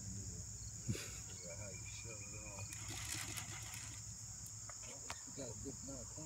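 Steady high chirring of crickets, with faint voices underneath and a couple of light knocks, about a second in and near the end.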